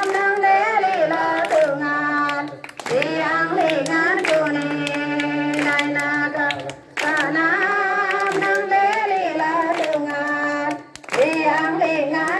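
Congregation of adults and children singing a hymn together, with hands clapping along. The singing comes in phrases that break off briefly about every four seconds.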